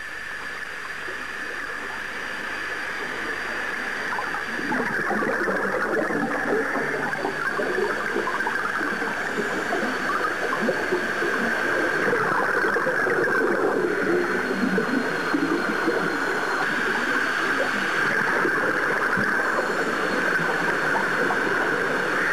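Underwater bubbling and gurgling with a steady hiss, fading in over the first few seconds and then holding steady.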